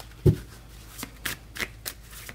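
A tarot deck being shuffled by hand: a soft thump about a quarter-second in, then a series of short papery card flicks roughly three a second.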